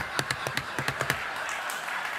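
A quick flurry of hand slaps on a desk, about a dozen sharp smacks in the first second or so before they thin out. Underneath them runs a steady wash of studio audience laughter and applause.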